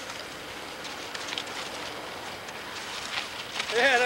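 Steady hiss of outdoor background noise with faint crackling, as picked up by an old home camcorder's microphone. Faint voices come and go, and a voice speaks briefly near the end.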